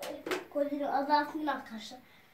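A young child talking quietly, too softly to make out, with a couple of light clicks near the start.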